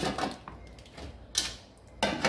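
Light handling noises of a raw pork loin being turned on a wooden cutting board, with one short sharp knock about a second and a half in.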